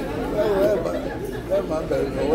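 Indistinct talk and chatter: people's voices, with no other sound standing out.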